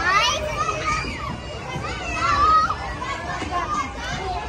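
Children's high voices and squeals in a playground: a sharp rising squeal right at the start, then short calls and a held high call about two seconds in, over background chatter.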